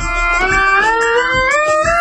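Korg MS-10 monophonic synthesizer playing a single sustained tone that climbs step by step, sliding smoothly from note to note, as keys are played up the keyboard. The repaired unit is sounding normally.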